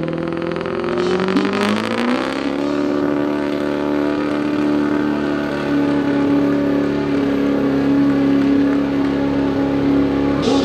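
Diesel pickup truck engine at full throttle dragging a weight-transfer pulling sled. The revs climb over the first couple of seconds, then hold high and steady under the heavy load.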